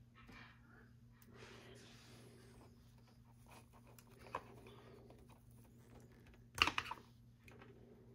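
Hands handling a plastic fashion doll and fitting a small plastic choker onto it: faint rustling and light plastic clicks, with a sharper click about four seconds in and a louder cluster of clicks about six and a half seconds in.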